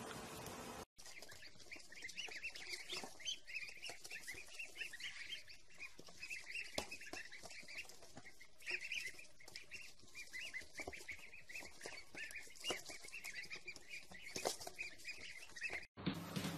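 Baby chicks peeping: many short, high chirps overlapping without a break. The peeping starts after a brief silent gap about a second in.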